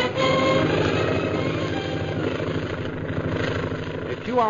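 Radio-drama sound effect of a propeller airplane's engine, a fast, even beating drone that eases slightly in level. It comes in as the last notes of an orchestral music bridge fade in the first second.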